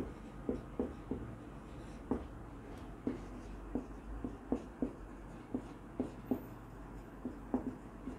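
Marker pen writing on a whiteboard: a run of short, irregular strokes and taps as letters are written.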